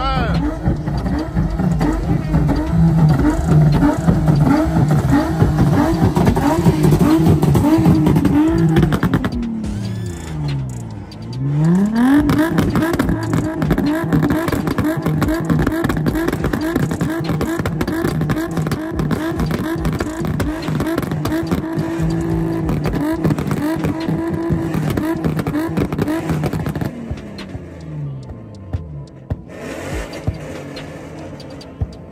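Infiniti G35 coupe's V6 held at high revs through a burnout, the revs bouncing quickly up and down. About ten seconds in the revs drop sharply and climb straight back. They fall away near the end.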